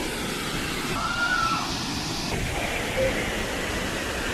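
Steady rush of Rainbow Falls, a large waterfall pouring into its plunge pool. A brief faint call about a second in.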